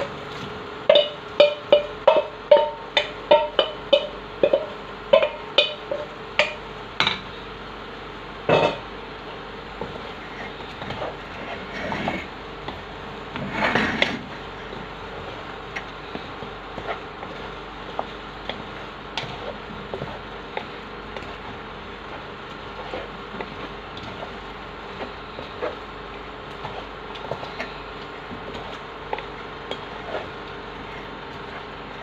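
A wooden spoon knocks against the rim of an enamel bowl, a quick series of ringing taps about two a second over the first seven seconds, as shrimps are scraped into a pot. After that come softer scrapes and stirring in the pot, with a couple of louder scrapes around the middle.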